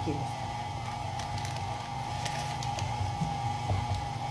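Electric motor of a KitchenAid Artisan stand mixer running steadily: a low hum with a thin whine above it and a few light clicks, as the beater works flour and lard for buñuelo dough.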